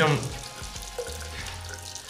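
Tap water running steadily into a ceramic bathroom sink, with a light knock about a second in.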